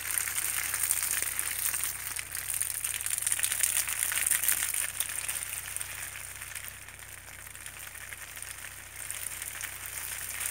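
Water spraying from a garden hose onto leafy sapodilla grafts and their hanging plastic bags: a steady crackling hiss that eases off for a few seconds past the middle, then picks up again near the end.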